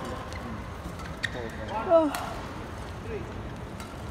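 Badminton rackets striking a shuttlecock in a rally: sharp hits, the loudest about two seconds in. Voices call out in the arena around it.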